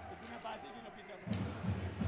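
Faint sports-hall ambience during a roller hockey game: indistinct voices in the hall, with louder low, irregular sounds of play from just past halfway.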